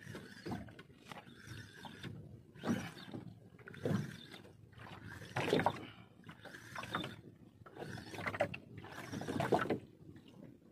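Fishing reel being cranked against a hooked fish on a hard-bent rod, its gears and handle making a steady mechanical whirring and clicking. The sound rises to a louder surge about every second and a half.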